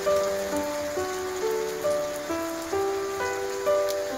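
Heavy rain falling, a steady even hiss, under background music of soft, held melodic notes, a new note roughly every half second.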